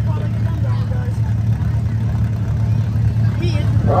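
Several race car engines idling together on the track, a steady low drone with no revving, under faint voices.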